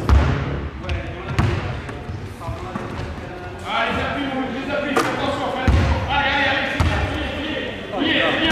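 A basketball bouncing on a hardwood court in a large arena, with several heavy thumps. Voices sound in the hall during the second half.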